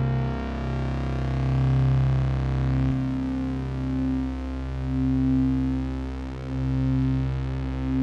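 Synthesizer drone music from analog and modular synths: deep notes held steadily under higher tones that break off and return, the whole sound swelling and ebbing in slow waves.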